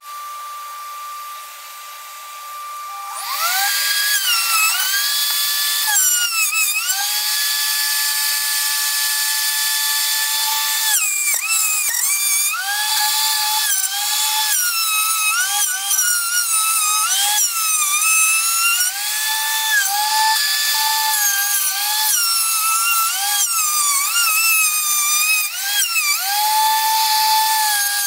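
Electric plunge router cutting a circular flush-mount recess for an 8-inch driver into an MDF panel. Its motor whine rises as it spins up about three seconds in, then repeatedly dips and recovers in pitch as the bit bites into the MDF and eases off.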